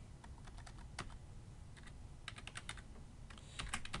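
Faint computer keyboard typing: short runs of keystrokes with pauses between them, one key struck harder about a second in.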